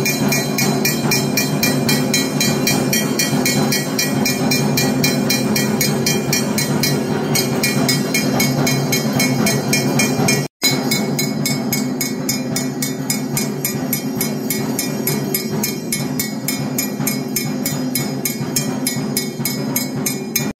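Temple bells ringing fast and steadily during a puja over a steady droning tone, broken by a split-second dropout about halfway through.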